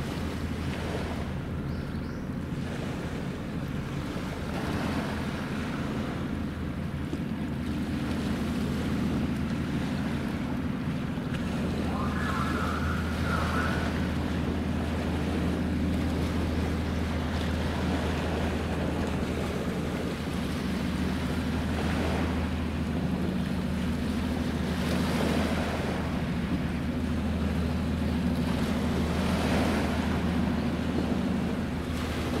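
Low, steady engine drone of the Towada-class replenishment ship JS Towada's diesel engines as the ship passes, growing slightly louder, over wind and lapping water. A brief higher warble comes about twelve seconds in.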